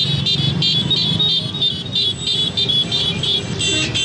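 Horns on a slow procession of motorcycles, scooters and cars, beeping in rapid repeated bursts about five times a second over the low running of the engines. Near the end several horns are held in long overlapping blasts.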